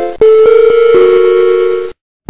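Production-logo jingle of steady electronic tones. A short break comes near the start, then a few held notes sound together, with another note entering about halfway. The tones cut off abruptly just before the end.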